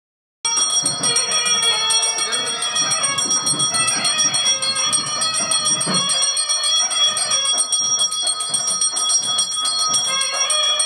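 Temple bells ringing continuously and densely during an aarti, many ringing tones overlapping. The sound cuts in after a brief silence at the very start.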